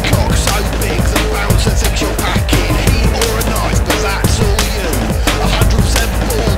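Instrumental break of a loud rock song: a band playing full-on with heavy, dense guitars and drums hitting several times a second, no vocals.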